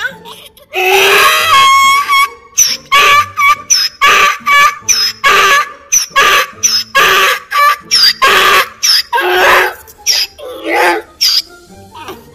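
Donkey braying loudly: one long bray of quick, rhythmic hee-haw pulses, about two a second, starting about a second in and stopping about a second before the end.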